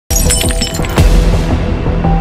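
Breaking-news intro sting: dramatic music that opens with a burst of glassy, shattering clicks, then a loud deep hit about a second in, with the music running on over a heavy bass.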